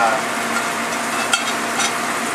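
Shrimp in stir-fry sauce sizzling steadily in a hot sauté pan, over a steady low hum, with two short clicks from the pan about a second and a half in.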